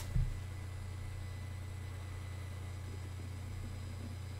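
Steady low electrical hum with faint hiss: background noise of the home recording setup.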